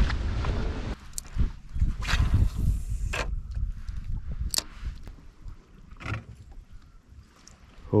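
Wind rumbling on the microphone and water lapping against a small fishing boat's hull, with a few scattered sharp clicks and knocks from handling a spinning rod and reel.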